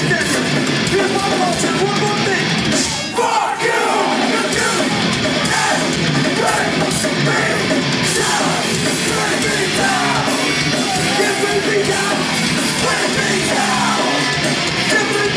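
Loud live crossover punk-metal band playing: distorted electric guitars, drums and a vocalist singing, heard from within the audience. The sound dips briefly about three seconds in.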